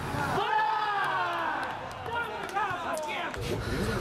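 Men's voices shouting during a beach soccer game, two calls, the first longer, over general pitch-side background noise; near the end the sound changes to a steady low rumble.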